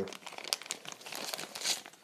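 Clear plastic bag crinkling as it is handled, a run of irregular crackles with a louder rustle near the end.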